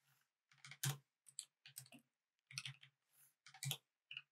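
Faint computer keyboard typing: short clusters of keystrokes, roughly one cluster every second.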